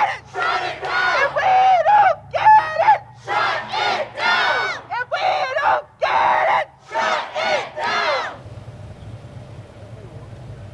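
A woman's high, wavering whoops, broken up by her hand patting over her mouth, in a run of rising-and-falling cries with others in the crowd joining in. The cries stop about eight seconds in.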